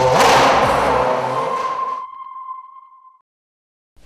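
Electronic title-sting sound effect: a whoosh that fades out over about two seconds, under a single high ping tone that rings on and dies away a little after three seconds in.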